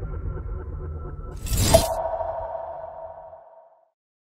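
Logo-intro sound effects: a low rumble fading, then a whoosh ending in a hit about a second and a half in, followed by a ringing tone that fades away.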